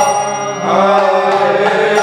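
A man singing a devotional chant over the steady held chords of a harmonium, the voice holding and bending a long note through the second half. There is almost no drumming in this stretch.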